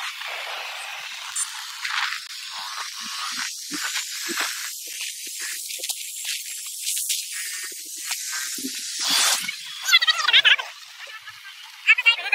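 Wind rushing over the microphone while riding a moving motorcycle, a steady hiss with a few brief knocks. A short voice is heard about ten seconds in.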